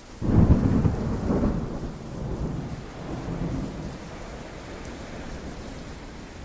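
A thunderstorm sound effect: a sudden loud rumble of thunder just after the start that rolls and fades over a couple of seconds, then a steady hiss of rain.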